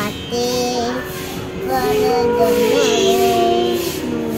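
A young girl singing a Sanskrit devotional verse in held, gliding notes over instrumental accompaniment with a light regular beat.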